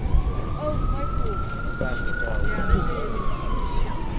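A siren wailing: one tone slowly rising in pitch for about two seconds, then falling again toward the end, heard over background crowd chatter and a low rumble.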